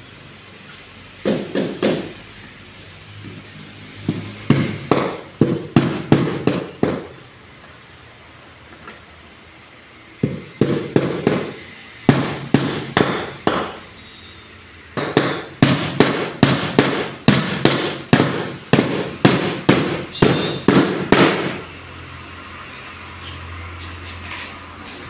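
Hand hammer striking a wooden frame as it is being assembled: runs of sharp blows, about two to three a second, with short pauses between the runs.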